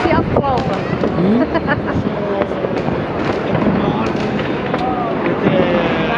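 New Year's firecrackers and fireworks going off all around: many sharp, irregular bangs and crackles in quick succession.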